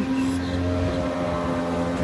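A steady low mechanical drone with several held tones, like a motor running at an even speed.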